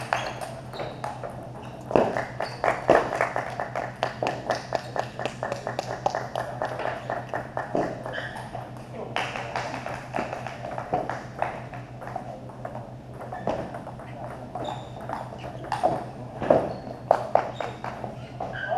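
Table tennis balls clicking off rubber paddles and table tops in a rapid, near-continuous patter, from rallies at more than one table, over a steady low hum.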